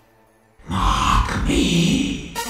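About half a second of near silence, then a deep vocal sample from a hardcore gabber track, held with no beat under it.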